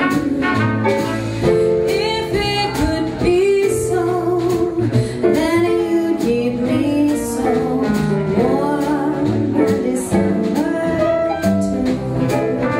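Live jazz combo playing a slow ballad: piano, double bass, drums with cymbals and saxophone, with a woman singing over them.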